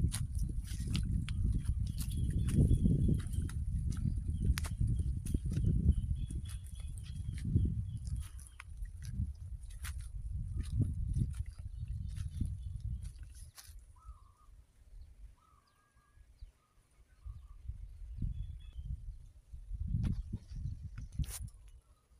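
Wind buffeting a phone microphone, with the rustle and crackle of someone walking through dry grass and fallen teak leaves. The rumble drops away for a few seconds past the middle, when a few faint bird chirps come through, then returns briefly near the end.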